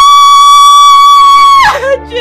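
A woman screaming in anguish: one long, loud, high cry that rises sharply at the start, holds a steady pitch and falls away near the end.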